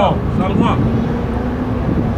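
Steady low rumble of city street traffic under men's voices, with a short spoken burst at the start. A steady low hum joins about a second in.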